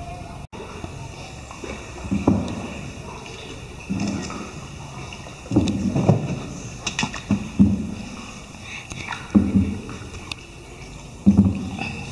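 Water sloshing around a small tour boat as it is paddled through a cave, in surges roughly every two seconds, with faint voices.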